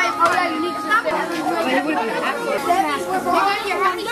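Many boys talking at once: a dense, steady babble of overlapping voices from a crowded table.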